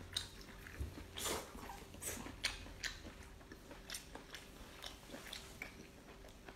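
Close-up mouth sounds of a person chewing and biting whole octopus: irregular wet clicks and smacks, a few louder ones about a second in and around the middle.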